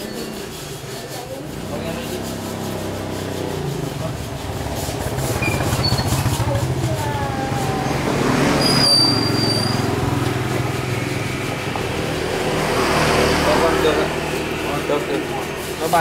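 Motor vehicles passing on a road, their engine hum swelling twice, with a brief high squeal about nine seconds in. Faint voices can be heard in the background.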